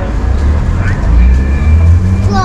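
Outdoor street noise: a steady low rumble with faint voices of passers-by about a second in.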